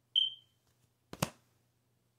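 A single short, high electronic beep that fades quickly, followed about a second later by one sharp click.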